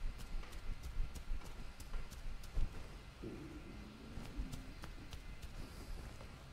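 Quiet room with faint, irregular small clicks and a few soft low bumps, handling noise on a clip-on microphone as the wearer moves her hands in front of it; a faint low hum passes briefly about three seconds in.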